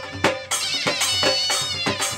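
Live folk music: dhol drums struck with sticks, with only a few strokes here, under a high, wavering wind-instrument melody.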